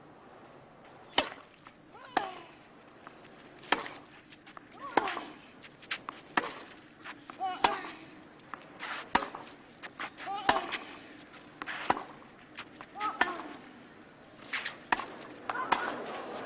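A tennis ball struck back and forth with rackets in a long clay-court baseline rally, a sharp hit about every one and a half seconds, some strokes followed by a player's short grunt.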